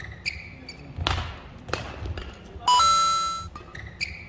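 Badminton rally: sharp racket strikes on the shuttlecock about two-thirds of a second apart and shoe squeaks on the court floor. Near the end a bright two-note electronic chime sounds for under a second, louder than the play.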